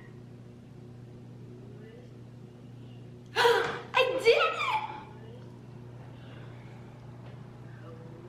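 A girl's voice: a sharp, breathy gasp-like burst about three and a half seconds in, followed by about a second of excited vocalising with no clear words, over a steady low hum.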